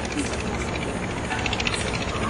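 Steady hiss with a low rumble underneath: the background noise of an old lecture recording, with no voice in it.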